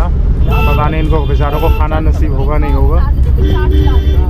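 Passengers' voices talking inside a moving shared auto-rickshaw, over the steady low rumble of its engine and the road.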